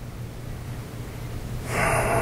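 Steady low room hum, then near the end a sudden, loud breathy rush of air: a man drawing a sharp breath.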